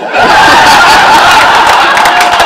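A room full of people breaking into loud laughter all at once, the laughter starting suddenly and carrying on without a break.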